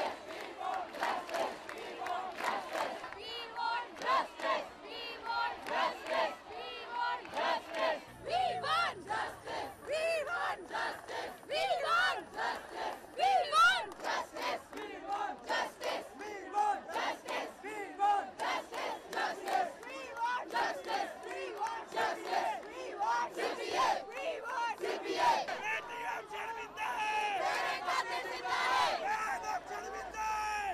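A crowd of protesters shouting slogans together, with hands clapping along.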